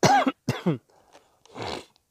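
A man clearing his throat and coughing: two short harsh bursts at the start, then a breathier one about a second and a half in.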